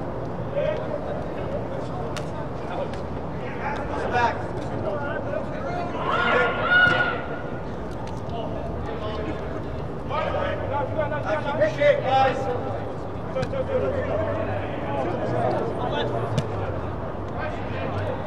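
Distant shouted calls from soccer players on the pitch, louder about six seconds in and again from about ten to thirteen seconds, over a steady low hum.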